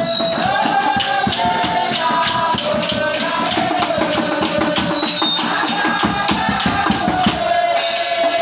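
Live church music: drums and other hand percussion playing a fast, busy beat under a long, gently sliding melody line.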